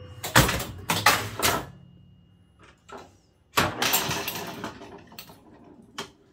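Bally Old Chicago electromechanical pinball machine in play: a run of sharp mechanical clacks from flippers, bumpers and scoring relays, three strong ones in the first second and a half and a dense burst a little past halfway, some of them followed by a ringing chime.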